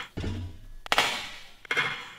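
Items tossed into a plastic wastebasket: a sharp knock about a second in, then a brief clattering rustle of packaging and wrappers.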